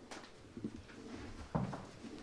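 People shuffling and moving around a lectern and microphone, with faint low murmurs and a knock about one and a half seconds in.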